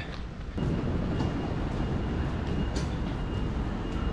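Steady city street noise, a low traffic rumble and hiss, with a faint thin high tone coming and going.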